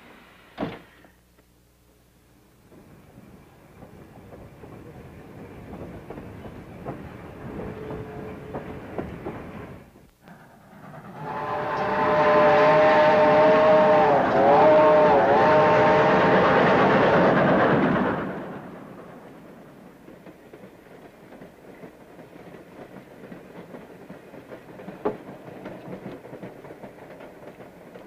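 A railway car door shuts with a knock, then a steam train runs along the track. About eleven seconds in, the steam locomotive's chime whistle blows loudly for about seven seconds, several notes sounding together that dip briefly in pitch midway, over the noise of the train. The train then runs on more quietly.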